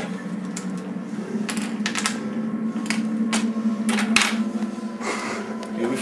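Scattered light clicks and taps, irregular and a fraction of a second to a second apart, over a steady low hum.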